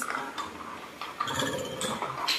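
Faint knocks, rattles and scrapes of a small wooden box and its loose contents being handled by a macaque on a tiled floor.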